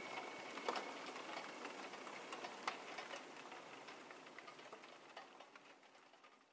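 The faint crackling noise layer left at the close of an electronic track, with scattered clicks, fading steadily away.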